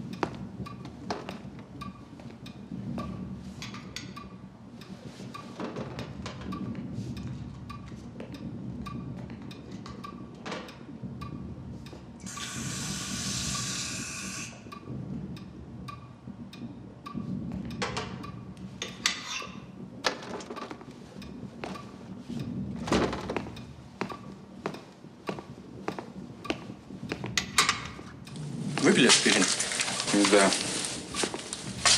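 A water tap running for about two seconds in the middle, among scattered light knocks and clicks.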